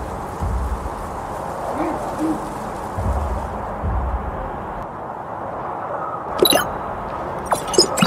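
A deep rumbling that comes in low pulses, once at the start and again around three to four seconds in, over a steady outdoor hiss.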